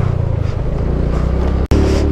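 TVS Jupiter scooter's small single-cylinder engine running steadily as it climbs a rough gravel track, with tyre and wind noise over it. The sound cuts out for an instant near the end, then resumes.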